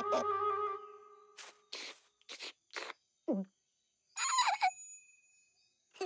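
Cartoon sound effects: a held music chord fades out, then a few quick swishes, a short falling tone, and a brief squeaky burst.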